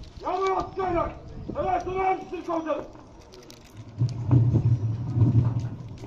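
A man's voice over the public-address system calling out a few long, drawn-out syllables. About four seconds in, a low rumble follows for under two seconds.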